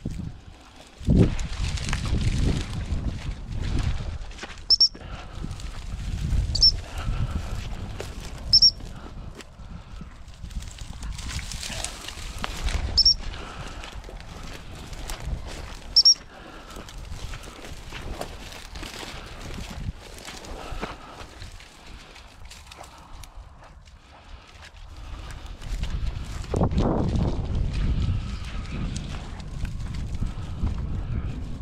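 A gundog whistle blown in short, sharp, high pips, five times in the first half, the turn command for a cocker spaniel being taught to quarter. Under it, footsteps swish through dry scrub and wind rumbles on the microphone.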